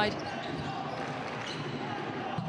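Basketball game court sound: a ball bouncing on the hardwood court over a steady haze of arena crowd noise.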